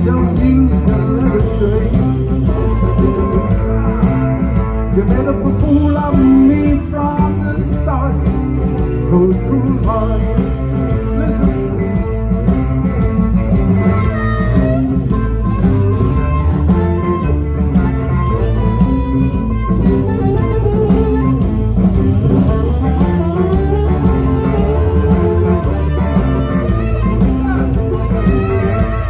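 Live blues band playing an instrumental passage: two electric guitars over a drum kit with a steady beat, and harmonica near the end.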